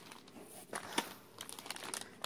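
Plastic candy packaging crinkling as a packet of gummies is handled and lifted out of a box, with a few sharp crackles about a second in and again near the end.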